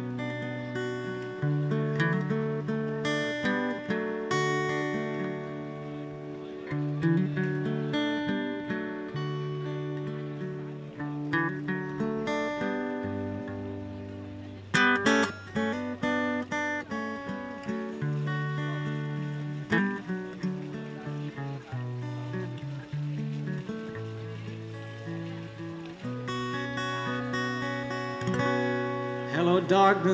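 Acoustic-electric guitar played through the busker's sound system in an instrumental passage, strummed and picked chords changing every second or two over held bass notes.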